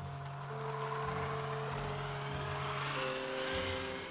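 A bus pulling away, its engine and road noise swelling and peaking near the end, under held notes of the background score.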